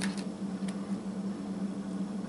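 A steady low hum over room noise, with a short click right at the start and a fainter one under a second later.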